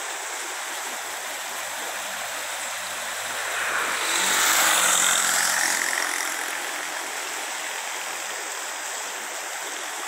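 Steady rushing of muddy floodwater pouring through the culvert arches of a flooded low-water crossing. A louder swell of noise rises and fades about four to six seconds in.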